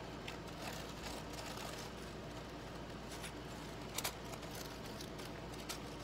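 Soft brushing and paper handling as a glue brush spreads Mod Podge over collage paper, over the steady low hum of a room air conditioner. A sharp click about four seconds in.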